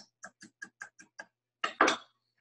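Light, evenly spaced kitchen clicks, about five a second, then a louder double knock near the end, from utensils being worked at a bowl on the counter.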